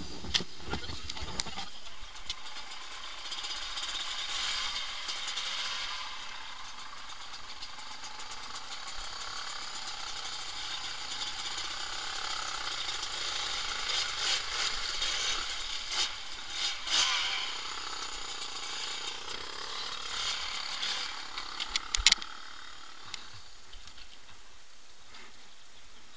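Off-road trail motorcycle running as it rides along a flooded track, heard from a camera on the rider, with a few sharp knocks in the first two seconds and again about 22 seconds in.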